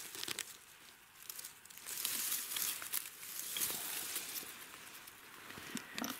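Dry grass and stems rustling and crackling as a hand parts and handles them, louder through the middle, with a few small snaps.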